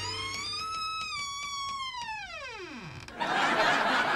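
A whistle-like sound effect: one pitched tone that rises a little, holds, then falls steeply in pitch and dies out about three seconds in. Music starts right after it.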